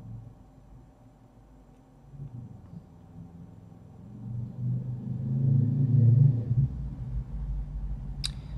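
A low rumble that swells from about halfway through, is loudest around six seconds in, then settles into a deeper, steady rumble.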